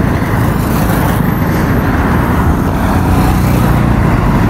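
Loud, steady noise of motor traffic, cars and trucks, passing close by on a busy road.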